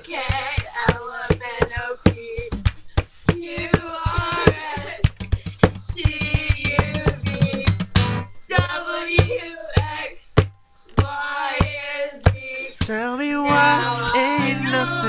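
Singing with a strummed acoustic guitar, played with sharp percussive strokes on the strings, breaking off briefly near the end.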